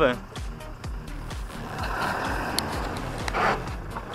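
Tractor engine running steadily while a mounted plough cuts through grass sod, with a brief rush of noise a little after three seconds in.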